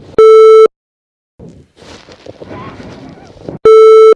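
Two loud, harsh electronic beeps, each about half a second long and about three seconds apart, with a low buzzy square-wave tone. Between them runs softer garbled, voice-like noise.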